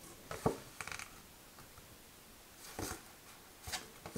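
Tarot cards being handled: a few soft slides and taps as cards are moved from the front of the deck to the back, with a slightly sharper tap about half a second in.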